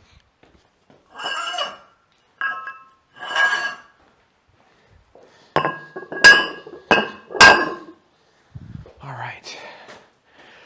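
Metal gym equipment being handled and knocked together, giving a string of clinks that ring with a metallic tone. A few softer clinks come first, then four sharp, louder clanks in quick succession about halfway through.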